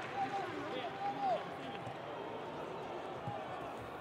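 Faint, distant shouts of footballers on the pitch in an empty stadium, over a steady low background hiss, mostly in the first second and a half.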